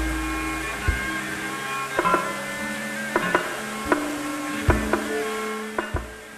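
Javanese gamelan playing: metallophones and gongs hold overlapping ringing tones, marked by sharp strokes about once a second. A deep gong rings at the start and is struck again about three-quarters of the way through.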